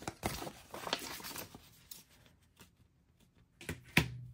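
Paper sticker sheets and stickers handled on a desk: soft rustling and light clicks, a quiet pause, then a couple of sharp clicks near the end.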